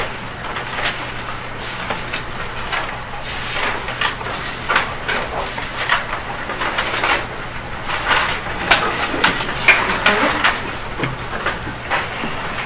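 Paper handling at a lectern: pages rustling and being turned, with irregular short crackles and soft knocks throughout.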